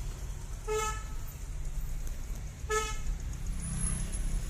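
A vehicle horn gives two short toots about two seconds apart, over the steady low rumble of the car's engine and road noise heard from inside the cabin.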